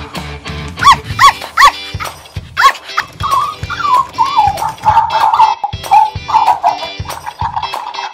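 Puppy yips, four short ones in the first three seconds, then a long wavering whine, over upbeat background music.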